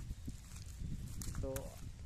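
Footsteps on dry field ground as a person walks, under a steady low rumble of wind on the microphone.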